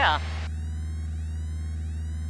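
Piper Warrior's four-cylinder Lycoming engine droning steadily in cruise, heard as a low, even hum through the headset intercom.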